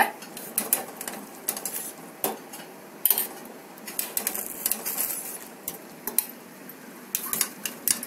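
Metal kitchen utensils clinking and knocking against cookware in irregular, scattered taps, over a steady faint background hiss.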